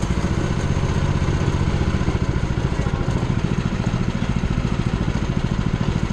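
Small engine running steadily with a fast, even putter, the motor of a go-kart moving slowly through the lot.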